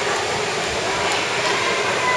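Steady, continuous din of an indoor swimming pool during a race: splashing water and voices from around the pool blended into one even wash of noise.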